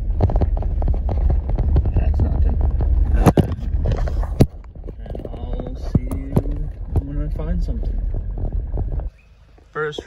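A vehicle driving on a rough dirt road: a steady low rumble of engine and tyres, with frequent rattles and knocks over bumps, two of them sharp and loud a few seconds in. The rumble cuts off suddenly about nine seconds in.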